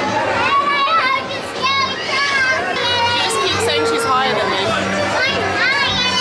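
A small child's high-pitched voice, chattering and calling out in rising and falling sounds, with no clear words.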